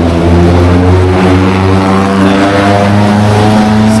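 A motor vehicle's engine running loud and close, its pitch rising slowly as it accelerates.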